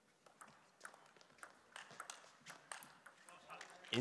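Table tennis rally: the ball clicks off paddles and the table in a quick, uneven rhythm, about two or three faint ticks a second.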